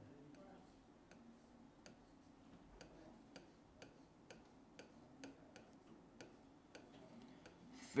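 Near silence with faint, evenly spaced ticks, about two a second.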